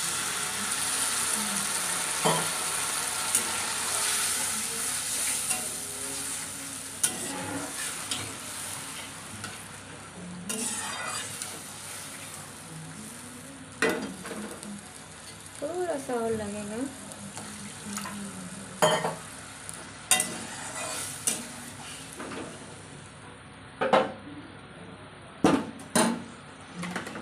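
Water poured into hot oil and fried masala in a kadai hisses and sizzles loudly, and the sizzle dies away over about ten seconds. After that a metal spatula scrapes and knocks against the pan as the gravy is stirred.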